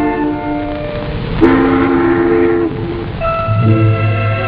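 Background music, then about a second and a half in a ship's whistle sounds one loud blast of a little over a second, as the ship departs. Music picks up again near the end.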